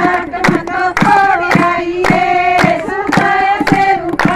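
Women singing a Haryanvi folk dance song (geet), with steady hand-clapping at about two claps a second keeping the beat.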